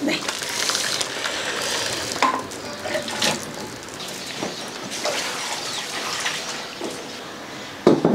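Water splashing and dripping as blanched bracken fern stems are lifted out of a wok of boiling water, with light clinks of a metal utensil against the wok.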